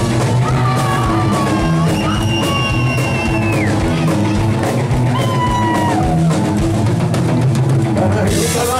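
Live rock band playing loud with drum kit, bass and electric guitar, a lead line of long held notes sliding down at their ends over the beat.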